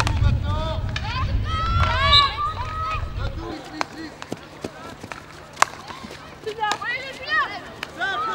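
Women's field hockey players shouting calls to each other, with sharp clacks of hockey sticks striking the ball, the loudest a little past halfway. A low wind rumble on the microphone stops abruptly after about three and a half seconds.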